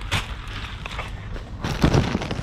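A plastic-wrapped multipack of kitchen paper rolls being taken off a shelf and handled, the wrapping rustling, with a short rustle just after the start and a louder crinkle and bump right against the microphone near the end.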